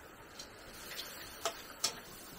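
Stirring utensil clinking against a steel wok during stir-frying: a few light, sharp clicks, the loudest near the end.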